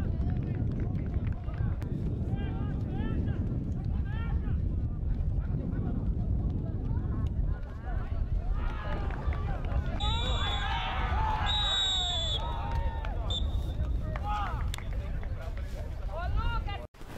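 Touchline sound of a youth football match: scattered shouts from players and spectators over a constant low rumble. About halfway through many voices shout at once, and two long high whistle blasts from the referee sound during that outburst.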